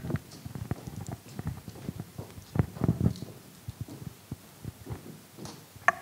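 Handheld microphone handling noise: irregular soft thumps, knocks and rustles as the microphone is moved and gripped.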